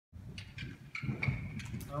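Horse's hoofbeats on a sand arena surface, a loose run of soft strikes as it canters into a show jump. A man's voice starts right at the end.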